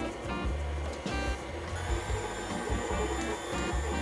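KitchenAid stand mixer running, its wire whisk beating pumpkin batter with a steady motor whir and a thin high whine, over background music.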